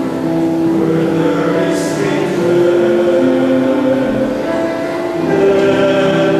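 Male choir singing held chords, the notes shifting every second or so.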